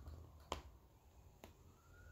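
Near silence broken by a sharp click about half a second in and a fainter click a second later, from hands holding a picture book up. A faint thin tone slowly dips and rises in pitch.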